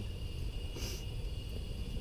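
Steady low hum with a faint, steady high-pitched whine, and one short hiss about a second in.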